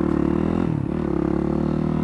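Yamaha WR dirt bike's single-cylinder engine running steadily under way, with a brief dip in pitch a little under a second in, heard from a helmet camera.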